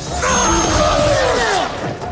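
A loud, drawn-out battle cry that falls steadily in pitch over about a second and a half as she attacks with a pair of blades.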